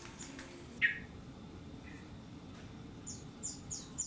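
A small bird chirping: one short call about a second in, then a quick run of short, high, falling chirps in the last second.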